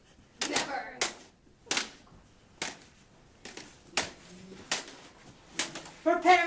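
Plastic toy lightsabers clacking together in a duel, a string of about ten sharp hits at irregular spacing.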